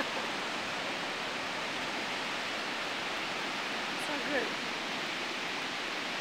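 Steady roar of ocean surf breaking on a sandy beach, with a short faint voice about four seconds in.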